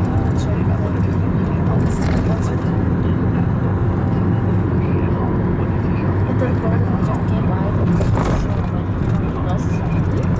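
Steady engine and road rumble of a car driving slowly in city traffic, heard from inside the cabin, with voices talking underneath.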